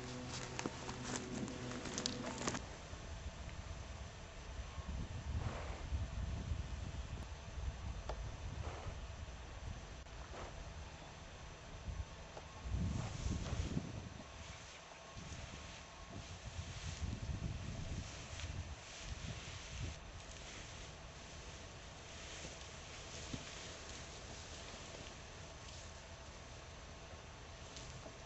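Faint footsteps of a person creeping forward on foot, with irregular low rumbling on the microphone.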